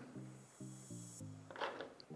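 Quiet background music: a few soft held notes one after another, with a faint hiss in the first second.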